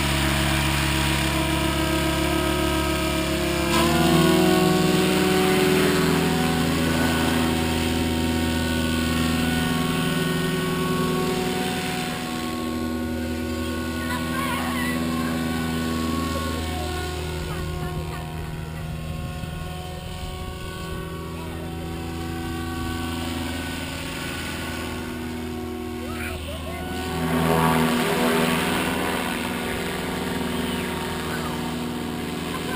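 Goblin 700 radio-controlled helicopter's rotors and drive running with a steady whine. The pitch rises as it lifts off and climbs about four seconds in, the sound fades a little as it flies farther out, and it swells loudly on a close pass near the end.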